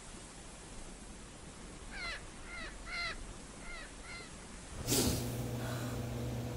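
A bird calling five times in quick succession over a steady background hiss. Near the end a sudden loud swell of noise brings in a low, steady hum.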